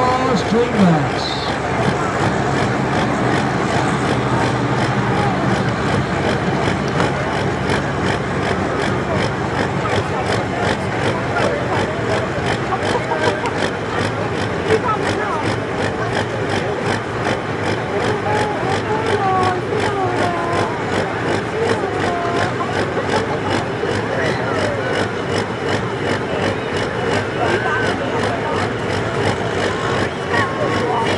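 Pulling tractor's engine idling steadily at the sled after a run, under the murmur of crowd voices.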